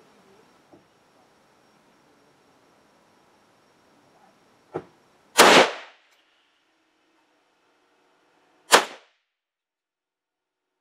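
Zastava M70 NPAP AK-pattern rifle in 7.62×39 firing two loud shots about three seconds apart, about five and a half and nine seconds in, the first preceded half a second earlier by a fainter sharp crack.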